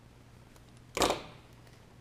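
One sharp snap about a second in, from hand wire strippers closing on a sensor lead to cut its insulation, fading quickly.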